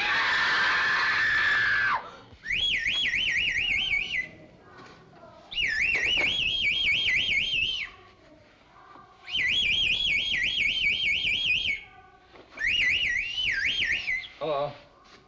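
A high, warbling whistle, trilling about six times a second, blown in four blasts of about two seconds each with short gaps between, after a first two seconds of hiss with a slowly falling tone.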